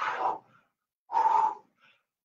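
A man breathing hard with two forceful breaths about a second apart, from the exertion of push-ups.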